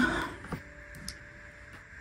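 A couple of light clicks from dressmaking scissors being handled after a cut, about half a second and a second in.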